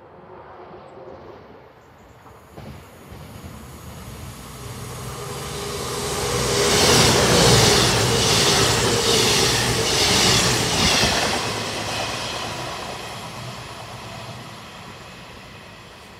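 Passenger train passing at speed: it builds up as it approaches, is loudest for about five seconds as the coaches go by with a regular clatter of wheels on rail a little more than once a second, then fades away.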